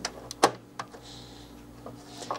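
A few sharp metallic clicks and knocks as a motherboard is slid and seated into a steel server chassis, the loudest about half a second in.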